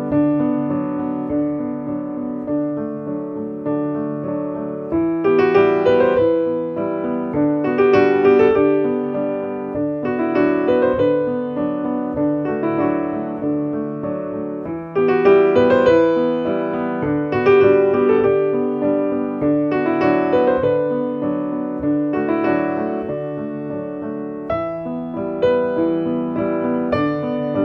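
Piano music playing as a soundtrack: sustained chords under a melody, growing fuller and brighter about five seconds in and again about halfway through.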